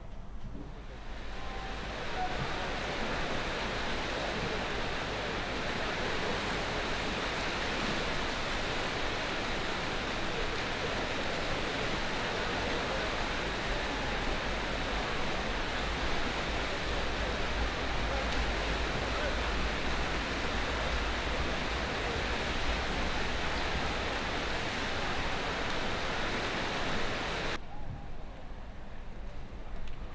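Steady wash of splashing from many swimmers doing front crawl in a large indoor pool, blended into one even noise. It fades in over the first couple of seconds and cuts off just before the end.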